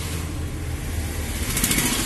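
Mahindra Bolero pickup's diesel engine running with road noise, heard from inside the cab as a steady low rumble. A brief hiss rises near the end.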